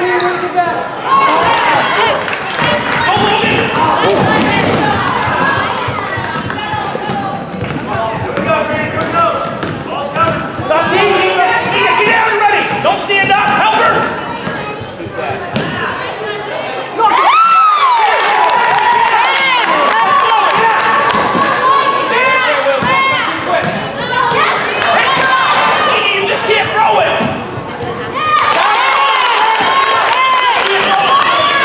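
Live basketball play on a hardwood gym court: the ball bouncing and sneakers squeaking in short rising-and-falling squeals, with indistinct voices echoing in the large hall.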